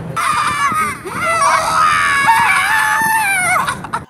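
Several men screaming together in excitement, one long high shout held for about three and a half seconds that breaks off just before the end.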